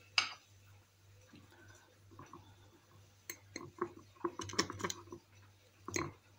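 Light clicks and knocks of vegetables and a glass jar being handled: one sharp knock just after the start, then a cluster of short clicks about three to five seconds in, with a faint steady low hum underneath.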